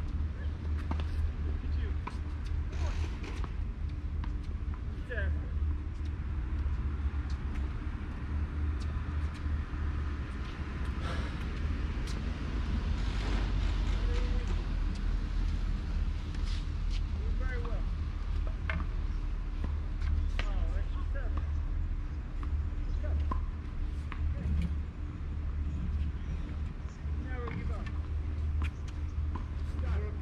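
Open-air ambience: a steady low rumble, like wind on the microphone or distant traffic, runs throughout, with scattered sharp taps and a few short chirps.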